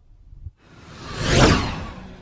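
Whoosh sound effect from an animated logo outro: a low rumble, then a rushing swell that builds to its loudest about a second and a half in and fades away.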